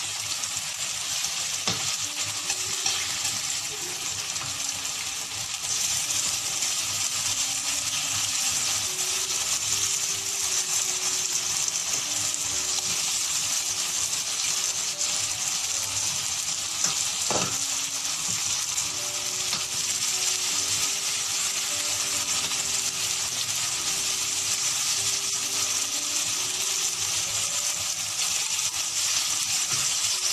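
Pork chops sizzling in hot oil in a frying pan, a steady high hiss that grows louder about six seconds in as more chops are laid in. A couple of light clicks are heard briefly over it.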